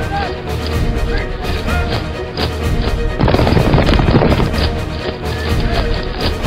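Background music under battle sound effects: a stream of sharp hits and clashes with a few short calls. The sound thickens into a dense din about three seconds in, then eases about two seconds later.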